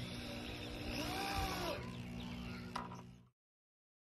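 Corded power drill running, driving screws into a board, with a steady motor hum whose pitch briefly rises and falls about a second in. The sound cuts off suddenly about three seconds in.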